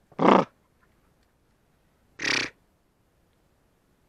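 Two short, loud vocal calls, one just after the start and one about two seconds later, each lasting about a third of a second.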